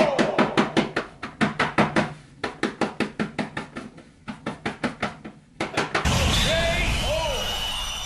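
A rapid series of sharp hits, about six a second, with short breaks, lasting over five seconds. About six seconds in it gives way to a louder rushing burst with a few gliding, voice-like tones in it.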